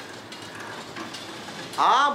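A man's voice: a pause with low room noise, then a loud, buzzy, drawn-out "aah" beginning near the end.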